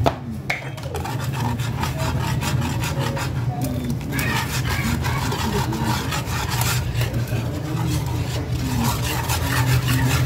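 Wire whisk scraping and rubbing against the bottom of a metal pan in quick, continuous strokes as a milk white sauce is stirred. A steady low hum runs underneath.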